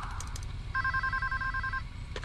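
Telephone ringing with an electronic ring, a fast two-note warble lasting about a second and starting just under a second in, over a low steady rumble.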